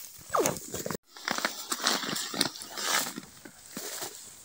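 A puppy gives one short whine that falls in pitch amid rustling hay. After a break, dry hay rustles and crackles steadily as sheep pull and chew hay at a wooden feeder.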